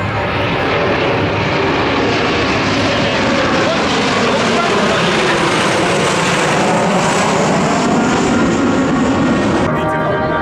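Formation of four Kawasaki T-4 jet trainers flying low overhead, their turbofan noise loud and sweeping down in pitch as they pass. The jet noise cuts off abruptly just before the end.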